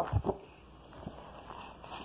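Soft handling noises as a picture book is moved and its pages turned: a couple of low thumps near the start, then a faint click about a second in.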